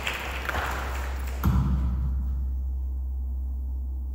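Concert hall between pieces: a soft rustle, then a single thump about a second and a half in. After that the hall goes quiet except for a steady low hum.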